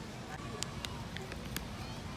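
Quiet outdoor ambience with a steady low rumble and faint distant voices, crossed by a run of light, irregular clicks in the second half.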